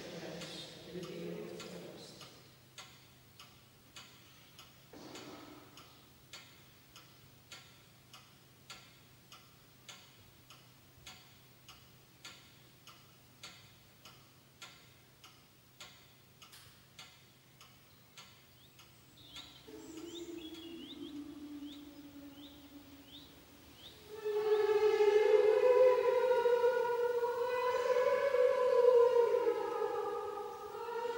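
A clock ticking steadily, a little under two ticks a second, over a faint hum. About twenty seconds in, held musical tones begin, and a few seconds later loud, slow singing in high voices takes over.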